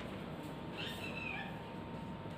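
Marker squeaking on a whiteboard during writing: a cluster of short, high squeaks about a second in.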